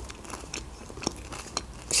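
A person chewing a mouthful of food close to a clip-on microphone: a scatter of soft, irregular mouth clicks.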